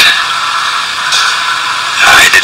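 A steady hiss of noise, with no voice or music, easing slightly in level toward the end.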